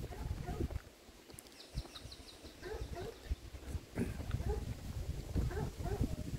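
Footsteps and wind rumble on the microphone of someone walking along a paved road, with a quick run of high chirps about a second and a half in and faint distant voices now and then.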